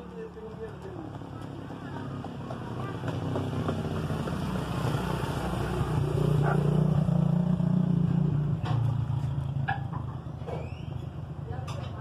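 A motor vehicle's engine growing steadily louder, loudest a little past the middle, then fading again: a vehicle passing close by, out of view.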